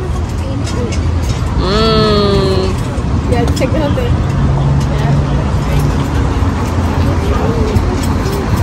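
Steady low outdoor rumble of traffic or engine noise. About two seconds in, one voice gives a drawn-out, slightly falling call lasting about a second, with faint voices scattered through the rest.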